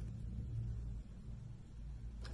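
A pause in speech holding only a faint, steady low hum of background room tone.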